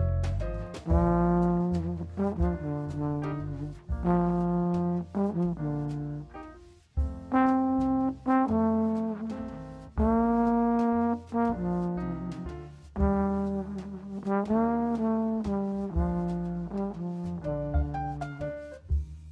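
Jazz trombone playing a melodic line of held and phrased notes over a rhythm section, with a walking low bass line and light cymbal ticks underneath.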